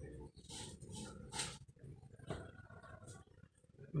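A dog and a cat licking a metal pan on the floor. A few short wet lapping and slurping sounds come between about half a second and a second and a half in, and a single light knock of the pan a little past two seconds.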